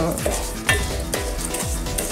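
A wooden spoon stirs and scrapes in a small stainless steel pan on a gas burner, with a light sizzle from the heating mixture and a couple of sharper knocks of the spoon against the pan. Background music with a steady beat plays underneath.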